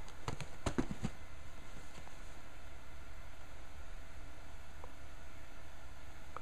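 A few light clicks and taps in the first second as cardboard model-kit boxes are handled, then a low steady room hum.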